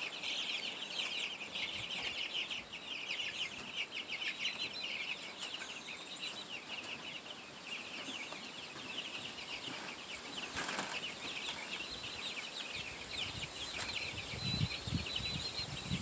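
A flock of young chicks peeping, many short high cheeps overlapping, busiest in the first few seconds and thinning after. A brief knock comes about halfway through.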